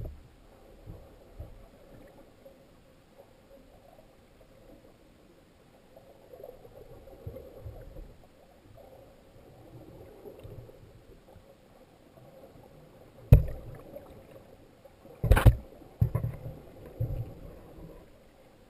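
Muffled underwater sloshing and rumbling of moving water heard through a submerged action camera's housing. A sharp knock comes about 13 seconds in and a louder cluster of knocks about two seconds later, followed by a few smaller bumps.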